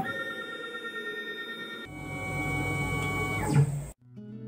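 CNC milling machine's axis drive motors whining steadily as the machine moves, with the pitch changing about two seconds in and sweeping down near the end before cutting off suddenly.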